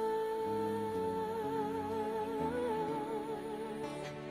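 A man's voice imitating a saxophone into a microphone, holding one long note with a vibrato that widens in the second half and stops just before the end. Soft backing chords change underneath.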